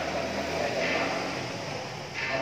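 A man's voice over a microphone and loudspeaker, smeared by the echo of a large hall.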